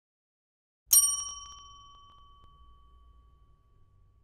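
A single bell-like ding, struck once about a second in, its clear ringing tone fading away over the next few seconds.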